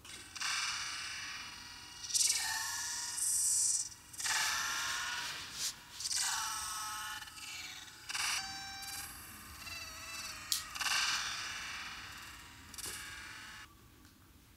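Film soundtrack played back thin and without bass: a string of separate bursts of sound effects, some with ringing pitched tones. It cuts off abruptly near the end.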